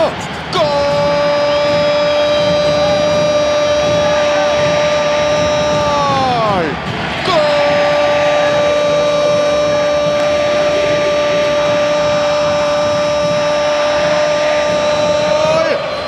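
A football commentator's long drawn-out goal cry, 'goool', held on one high note in two long breaths of about six and eight seconds, each dropping in pitch as it ends, over crowd noise.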